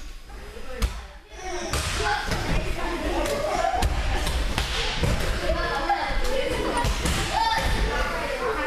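Children's voices chattering in a large hall, with thuds of bodies landing on judo mats during rolls and breakfalls; one sharp thud comes just under a second in.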